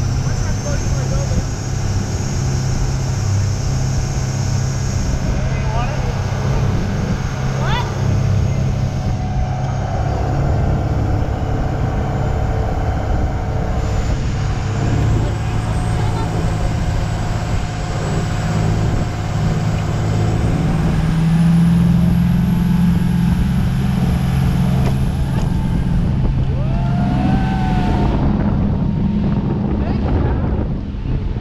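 Motorboat engine running steadily at speed, with water rushing along the hull and wind on the microphone.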